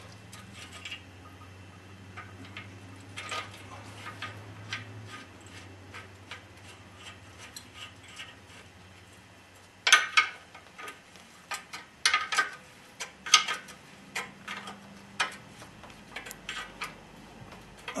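Metal parts and hand tools clinking and clicking while a motorcycle's rear suspension link and its bolt are fitted. A few soft clicks at first, then from about halfway through a run of sharp, irregular metallic clicks.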